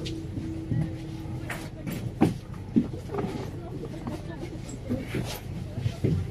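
Indistinct voices of passengers talking inside a MAZ 203 city bus, over the low steady rumble of the bus's engine. A steady hum stops about a second and a half in, and a few short clicks sound.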